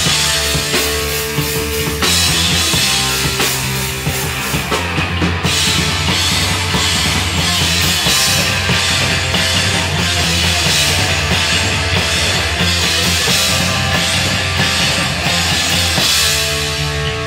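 Hardcore punk band playing live without vocals: distorted electric guitars, bass and a drum kit, loud and dense, with the riff changing about five seconds in.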